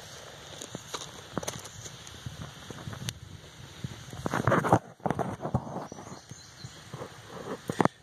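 Crunching and scuffing on loose gravel with scattered small clicks, and a louder rustling burst about halfway through.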